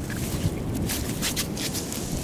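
Wind buffeting the microphone with a steady low rumble, broken by a few brief rustles.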